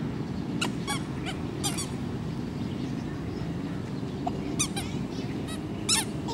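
Steady low rumble of distant road traffic, with short, high-pitched chirps breaking in a few at a time.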